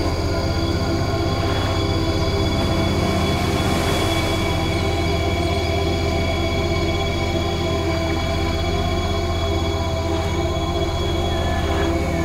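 Ambient sci-fi drone music: a steady low rumble under many held tones, unchanging throughout.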